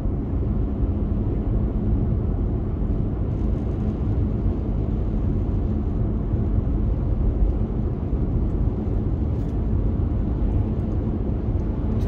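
Steady low rumble of a car in motion, heard from inside the cabin: tyre and road noise with the engine underneath, holding even at highway speed.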